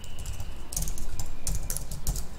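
Typing on a computer keyboard: a quick string of keystroke clicks that begins a little under a second in.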